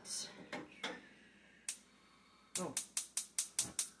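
Gas range burner's spark igniter clicking rapidly, about seven clicks a second, starting a little over halfway through as the burner is lit, after a single click earlier on.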